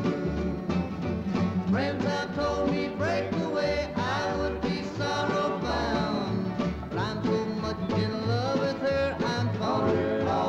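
Country song played by a bluegrass-style band: acoustic guitars, mandolin, banjo and upright bass with drums, the bass marking a steady beat.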